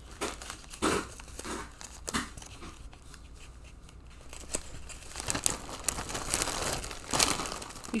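Packaging being unwrapped by hand: irregular crinkling with a few tearing rips, busier at the start and again in the second half, with a lull in between.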